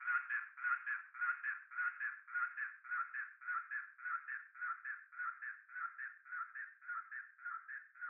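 A thin, telephone-filtered vocal sample of the word "London" looped about twice a second, slowly fading out as the track's outro.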